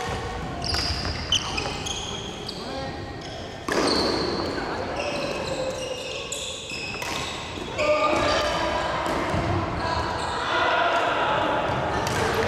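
Badminton doubles rally in a large, echoing gym hall: sharp racket hits on the shuttlecock and many short, high squeaks of court shoes on the wooden floor, with voices in the background.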